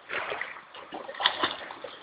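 Irregular water splashing from a dog swimming in toward the shore.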